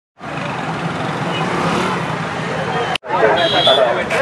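Road traffic noise with a steady hum of vehicle engines, cut off abruptly about three seconds in. Then people talking over the traffic, with a brief high-pitched tone.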